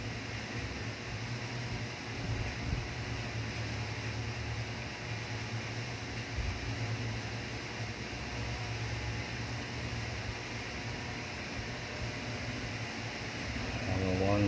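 Steady room noise: a constant low hum under an even hiss, with no other distinct sound.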